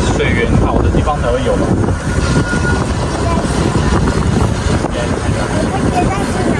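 Wind buffeting the microphone while riding an open, canopied bicycle cart along a road: a steady, loud low rush, with brief talk over it.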